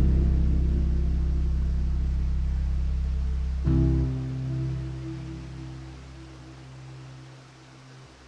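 Slow, calm classical guitar music: a deep chord rings out, a second chord is struck about three and a half seconds in, and the sound dies away toward the end.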